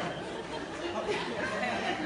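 Speech only: voices talking over one another, like congregation chatter, with no other distinct sound.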